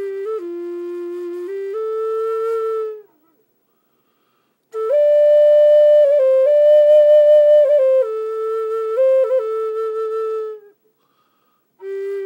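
Native American flute played solo: slow phrases of long held notes stepping between pitches, with quick grace-note flicks between some notes. A phrase fades out about three seconds in, and after a short silence a louder, higher phrase enters and steps back down. A second silence follows, and another phrase starts right at the end.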